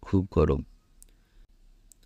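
A narrator's voice reading in Bangla for a moment, then a short pause broken by two faint clicks.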